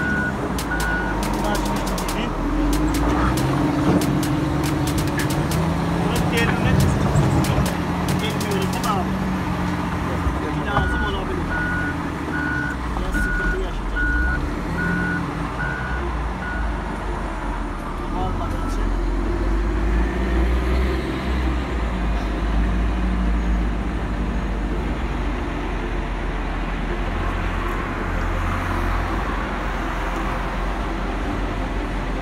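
A heavy machine's engine runs with a steady low rumble, and a reversing alarm beeps at an even pace, briefly at the start and again for about six seconds around the middle. Sharp clicks and knocks come through over the first several seconds.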